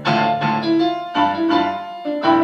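Piano ensemble playing a waltz: an upright piano played four hands together with an electronic keyboard. Chords are struck at the start and again just past a second in, with melody notes ringing between them.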